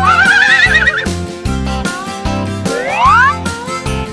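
Instrumental children's song music with a steady beat. A warbling, wavering sound effect sits in the first second, and a quick rising glide comes about three seconds in.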